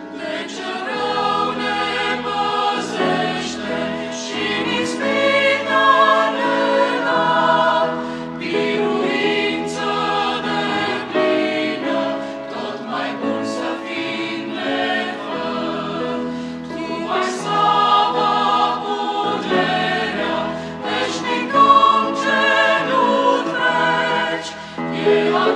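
Mixed choir of men's and women's voices singing a Romanian hymn in harmony, with grand piano accompaniment.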